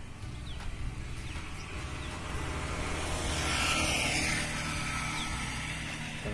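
A vehicle passing by, its hiss swelling and fading about three to five seconds in, over a steady low rumble.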